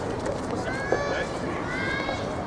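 Voices calling out across the outdoor soft tennis courts in short rising shouts, over steady background noise, with a single short knock about a second in.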